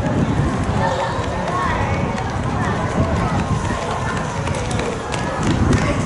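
Spectators' voices chattering and calling out over one another, indistinct and overlapping, over a steady low rumble.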